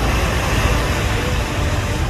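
Wind buffeting a phone's microphone on an open shore: a steady, loud, low rumble with a hiss above it, and faint music underneath.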